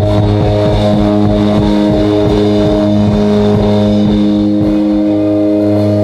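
Live rock band's electric guitars holding a loud, sustained distorted chord that drones on steadily, with low notes sliding up and down beneath it.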